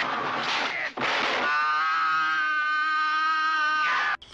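A person yelling in a film scuffle: a rough, noisy shout for about a second, then one long yell held on a single pitch for about two and a half seconds, cutting off near the end.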